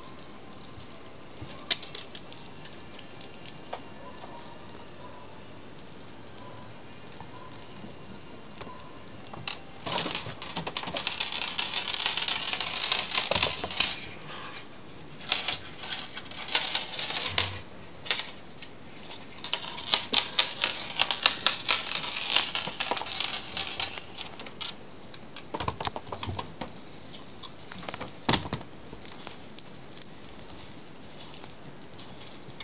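Cat wand toy with small dangling metal trinkets jingling and clicking as kittens bat and bite at it, in irregular rattling bursts, busiest from about a third of the way in to about three quarters of the way through.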